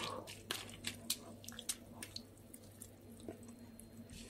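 Shredded cabbage being pressed down by hand into its own brine in a plastic bucket for sauerkraut: faint wet squelches and small crackles, a few scattered ones each second.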